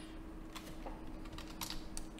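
Several faint, scattered clicks of a computer keyboard and mouse being worked, over a low steady hum.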